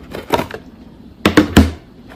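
Cardboard packaging and paper being handled in a box: a light knock, then a second and a quarter in a louder clatter ending in a dull thud.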